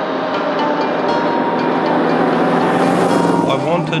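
Cadillac V8-powered Ford Model A hot rod coupe driving past, its engine and road noise swelling to a peak as it passes close about three seconds in.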